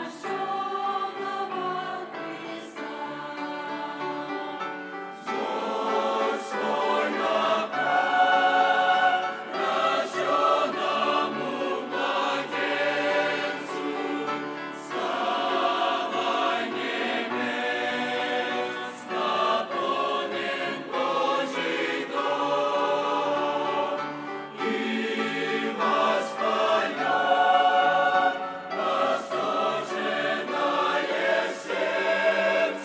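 Mixed choir of men's and women's voices singing a hymn in parts. It starts softly, grows fuller about five seconds in, eases briefly near the end and swells again.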